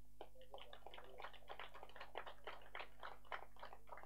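Faint, steady electrical hum in the microphone and sound-system chain, with rapid, irregular, faint clicks over it, about five or six a second.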